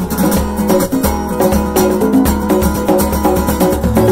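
Strummed acoustic guitar with congas played in a steady rhythm, over low sustained notes, in an instrumental passage of a rock song.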